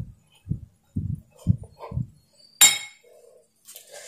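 Wooden spatula working a thick beetroot semolina pudding in a nonstick pan: five soft, dull thuds about every half second as the mixture is pressed and turned, then one sharp clink a little past halfway.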